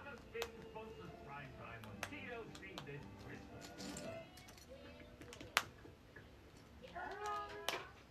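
Plastic Lego bricks clicking and rattling as they are handled and pressed onto a plate: a scatter of small sharp clicks, one louder click about halfway through. Low voices and music run in the background.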